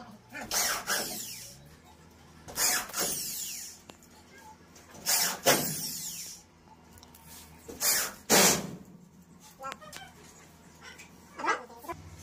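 Electric screw gun driving screws through a gypsum ceiling board into the metal framing, in about five short bursts a couple of seconds apart.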